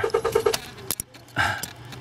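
Light clicks and rattles of a small plastic-and-circuit-board relay being handled in the fingers, with a rapid pulsing buzz that stops about half a second in.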